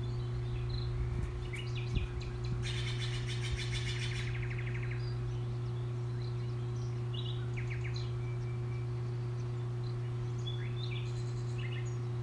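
Songbirds chirping over a steady low hum, with a rapid trill lasting about a second and a half starting around two and a half seconds in. A single soft thump about two seconds in.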